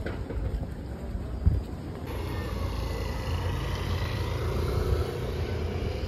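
Outdoor street ambience: a steady low rumble of traffic, with a single thump about a second and a half in.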